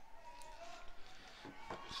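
Faint outdoor ballpark ambience with faint distant voices, and a man's voice starting just before the end.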